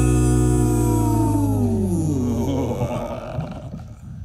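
The band's held closing chord slides steadily down in pitch over about two seconds and dies away under fading cymbal wash, ending the song.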